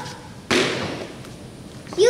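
A single sudden thud about half a second in, its noise trailing away over the next second and a half.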